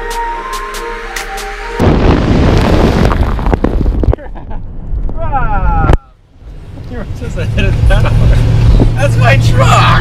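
Outro music that cuts off about two seconds in, replaced by loud wind rushing through an open window of a moving vehicle. In the last few seconds a steady low engine hum and voices come in under the wind.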